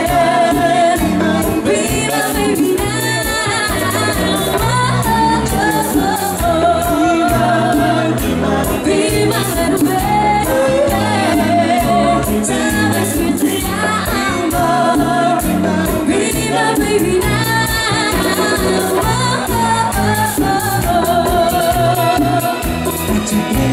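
Live dance orchestra playing a bachata: several voices singing over electric bass, drum kit and keyboards with a steady beat.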